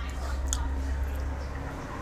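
A man sipping iced milk tea through a plastic straw, with a small click about half a second in, over a steady low hum.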